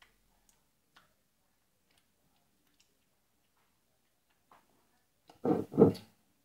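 Faint small clicks in a quiet room, then two loud knocks in quick succession near the end as a knife is dug into a jar of chocolate spread.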